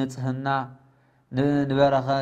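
A man preaching in long, drawn-out, intoned phrases: one phrase ends, then after a pause of about half a second a second phrase begins.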